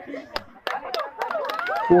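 Voices of an outdoor crowd, with several sharp knocks in the first second and a voice calling out near the end.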